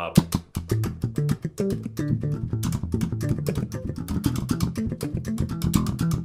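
Electric bass guitar played with the double-thumb slap technique in a fast triplet pattern: thumb down, a left-hand stroke, then thumb up. It gives a rapid, even stream of percussive slaps over shifting low notes.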